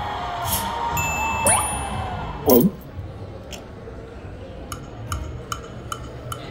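Video slot machine playing a spin, with a quick run of short clinking chimes in the last couple of seconds as the reels land, over casino background chatter and music.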